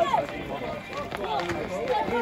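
Voices of people nearby talking outdoors, with a few sharp clicks among them.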